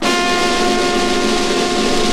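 An early ska record playing: one long chord held steady, with no drums under it.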